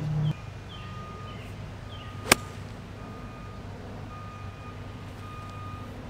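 A golf wedge strikes a ball off the fairway turf: one sharp crack about two seconds in. Faint high beeps repeat evenly over a low steady hum.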